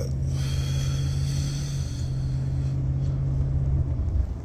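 Steady low rumble of a car heard from inside the cabin, with one even low hum held throughout.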